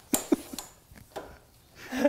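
Handling noise from a frame panel reflector kit being put together: the metallic reflector fabric rustles and the aluminium frame pole gives a few light knocks, loudest just at the start.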